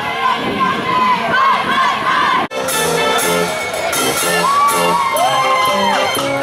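A group of young people shouting and cheering, cut off abruptly about halfway through. Then a Dutch street organ plays a tune with held notes over a steady repeating bass.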